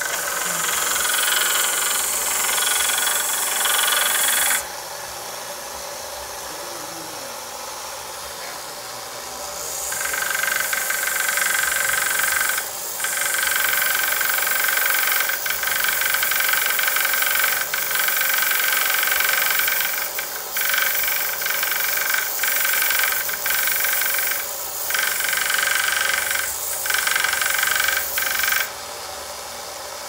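Small benchtop belt sander running, its belt grinding the end of a wooden mallet handle to shape the tenon that fits into the mallet head. The grinding drops back to the quieter steady hum of the running sander for about five seconds early on, breaks off briefly several times, and stops near the end.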